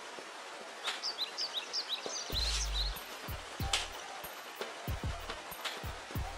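Faint outdoor ambience with a run of quick, short bird chirps in the first half, followed by several dull low thumps in the second half.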